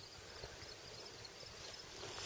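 Faint outdoor field ambience with a faint high insect chirring, such as crickets.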